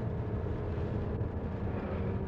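Steady low engine drone of a bus, heard from inside the cabin while it drives.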